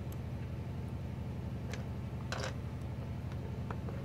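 A steady low hum with a few faint ticks and a short scratch a little over two seconds in, as an embossing stylus is drawn along the points of a foil cardstock star on a grooved scoring board to score its fold lines.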